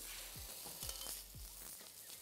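Oiled chicken breasts sizzling on a hot ridged grill plate, a faint, steady hiss.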